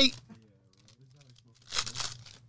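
A hockey card pack's wrapper torn open: one short, rough rip near the end, after a near-quiet stretch.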